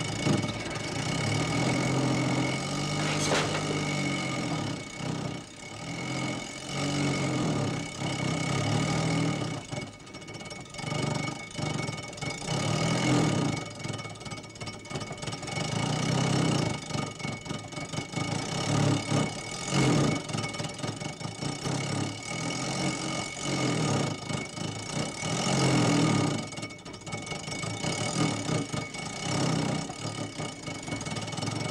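Small car engine running in a cartoon soundtrack, its level rising and falling every second or two, mixed with background music.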